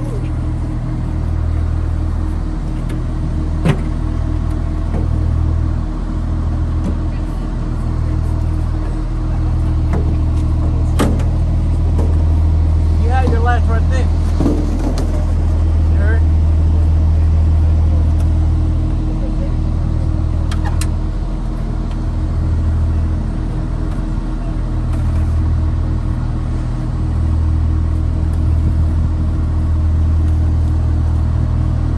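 M-SHORAD Stryker's diesel engine idling with a loud, steady low rumble, broken by a few sharp knocks about 4, 11 and 21 seconds in.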